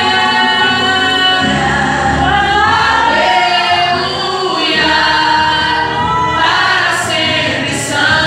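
A woman sings a gospel song into a microphone through a PA, holding long notes that bend in pitch, over amplified instrumental accompaniment with a low bass line.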